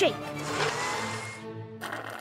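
A cartoon blender sound effect whirring for about a second, over light background music.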